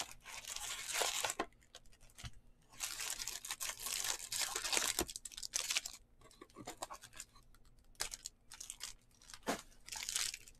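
Crinkling of sealed foil trading-card packs being handled and lifted out of a cardboard box, in bursts, with a few sharp clicks late on.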